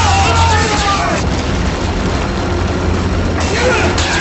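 Sci-fi film soundtrack: a steady low spaceship rumble. Over it, warbling, gliding high-pitched calls sound for about the first second, and a new burst of noise with more glides starts near the end.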